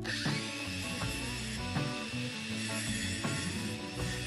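BLACK+DECKER cordless angle grinder running free with its cut-off disc spinning, a steady high whine, not yet cutting the threaded rod, over background music.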